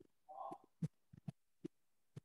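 A quiet pause broken by about six faint, irregularly spaced soft taps or clicks, with a brief faint hum of a voice about half a second in.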